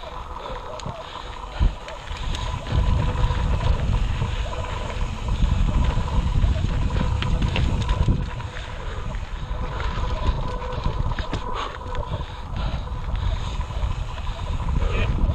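Mountain bike climbing a rocky dirt singletrack: wind buffeting the camera microphone in a low rumble, with scattered clicks and rattles from the bike over the rough trail. The rumble grows louder about three seconds in.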